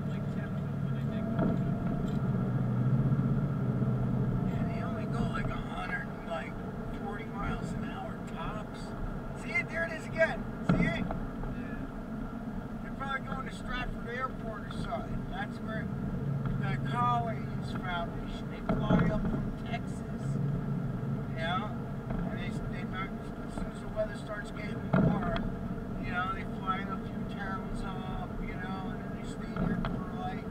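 Car driving, heard from inside the cabin: a steady engine and road hum, broken by a few sharp thumps about 11, 19 and 25 seconds in.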